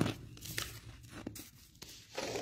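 Thin Bible paper being handled, crinkling in several short crackles, the loudest at the very start.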